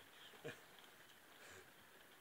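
Near silence, broken about half a second in by one short, low call from a blue-and-gold macaw that falls in pitch.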